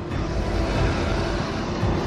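Soundtrack music with held notes over a dense, steady low rumbling wash.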